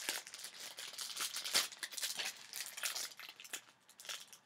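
Packaging being crinkled and torn open by hand: an irregular run of rustles and crackles.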